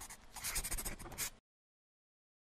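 Writing sound effect: quick, scratchy pen strokes on paper in a fast run, which stops suddenly about one and a half seconds in.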